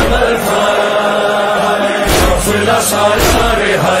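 A manqabat (Urdu devotional song) sung in a chanting style, with held vocal lines over deep drum thumps; the heaviest thumps come about two seconds in.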